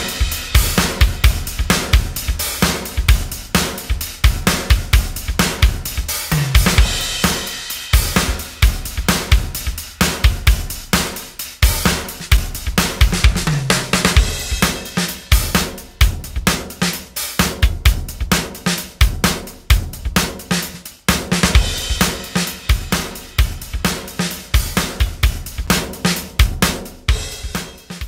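Recorded drum kit playing a steady groove of kick, snare, hi-hat and cymbals, run through a compressor in punch mode set to expand the dynamic range, adding punch to the hits. The playing breaks off briefly about two-thirds of the way through.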